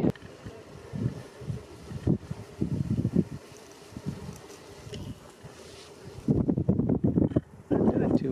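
Wind buffeting the camera microphone in uneven low rumbling gusts, easing off through the middle and swelling again near the end.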